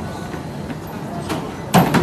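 A person falling off a running treadmill, a single heavy thud about three-quarters of the way through as the body hits the deck and floor, over steady gym background noise.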